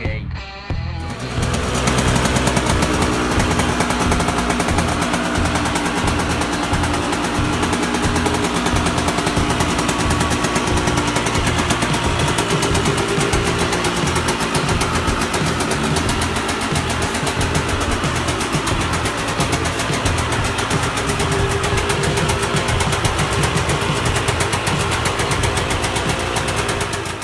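Two-stroke supermoto motorcycle engine running steadily with a dense rattling exhaust note. It starts loud about a second in.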